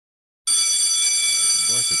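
School bell ringing, a steady metallic ring that starts abruptly about half a second in.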